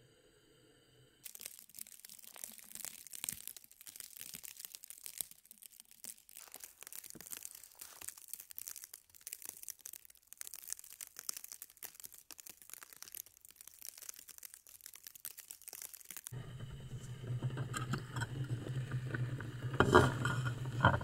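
Irregular, crisp crackling and crunching of snow outdoors in a snowstorm. About sixteen seconds in, it gives way to the steady low hum of a portable gas stove burner under a pot of boiling water, with a couple of sharp clanks near the end.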